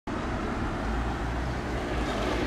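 Steady outdoor city background noise: a low rumble of road traffic under an even hiss.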